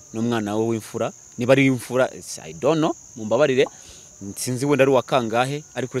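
Crickets chirring in a steady, unbroken high-pitched drone beneath a man's talking.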